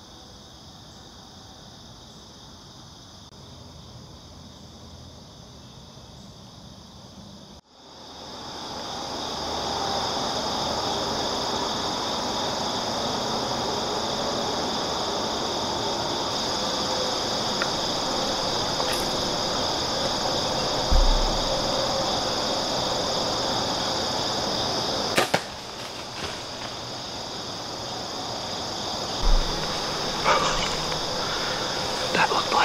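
Compound bow shot, the release of the arrow heard as a sharp snap about 25 seconds in, over a steady chirring of crickets and other insects. The insect sound gets louder after a break about eight seconds in. Dull low thumps come a few seconds before and after the shot.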